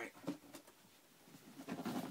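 Faint handling noise of sneakers being picked up and set down, a few light knocks, with a low hummed murmur from a man near the end.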